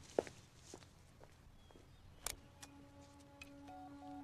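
A few faint footsteps and light clicks, then soft background music with sustained held tones comes in a little past halfway.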